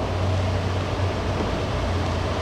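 Steady low hum with an even hiss of background room noise, such as a fan or ventilation running in a large room.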